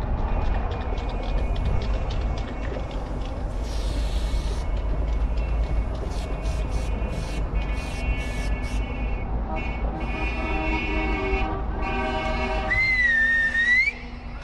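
Aerosol spray paint can hissing, one longer spray about four seconds in followed by several short bursts, over a steady low rumble. After that comes a sustained pitched sound with many overtones, and near the end a short wavering whistle-like tone.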